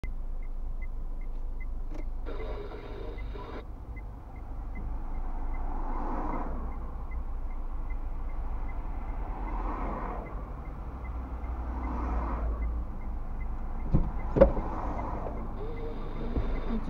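Cars passing a stationary car, heard from inside the cabin over a low steady rumble and a faint even ticking a little over twice a second. Two sharp clicks near the end are the loudest sounds.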